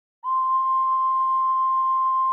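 A recorder playing one long held high C, steady and pure, starting about a fifth of a second in. Faint soft ticks run beneath it about three times a second.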